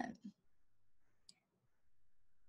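Near silence: room tone through a video-call recording, with one faint short click a little over a second in.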